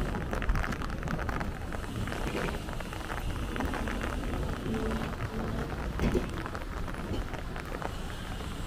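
Street ambience: a steady low rumble with many small crackles throughout.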